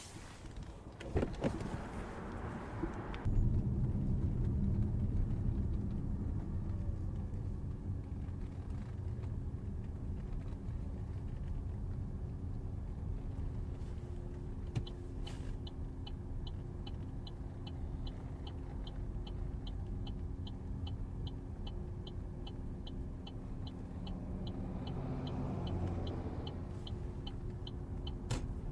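Opel Grandland GSe cabin noise on the move: a steady low rumble of the car driving. About halfway through it is joined by a regular quick ticking like the turn-signal indicator. In the first three seconds, hands rub and tap on the back of a front seat.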